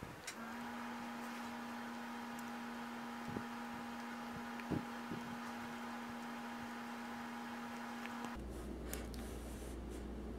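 A faint steady hum of two held tones that cuts off suddenly about eight seconds in, giving way to a low rumble, with a few faint clicks along the way.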